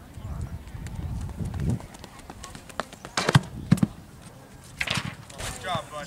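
Running footsteps on a track for the first couple of seconds, then two loud, sharp knocks about half a second apart a little past the middle, with more clicks and a short wavering voice-like call near the end.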